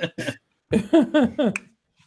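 A man laughing: a couple of short bursts, then a run of about four quick "ha"s, each falling in pitch.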